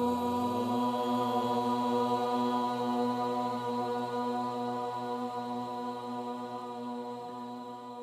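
Chanted mantra intro music: voices holding one long, steady note that slowly fades toward the end.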